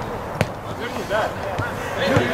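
A football kicked once, a single sharp knock about half a second in, amid players' shouts on the pitch.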